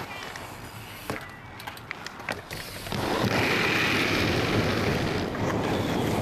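BMX bike riding on a concrete skatepark, with a few sharp clicks and knocks in the first half. From about three seconds in, a louder steady rush of wind on the microphone and rolling tyres takes over.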